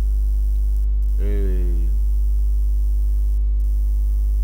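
Loud, steady electrical mains hum with a ladder of overtones, running under a screen-recorded voice track, broken about a second in by a brief drawn-out voiced hesitation sound.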